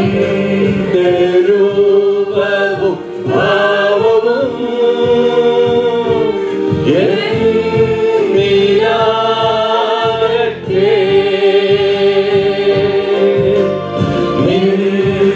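Two women and a man singing a Malayalam Christian worship song together into microphones, holding long notes that slide between pitches, over accompaniment with a steady low beat.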